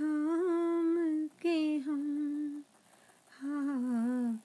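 A singer's wordless melody, hummed or held on vowels, in long, gently wavering notes with no accompaniment heard. There is a short break about two and a half seconds in.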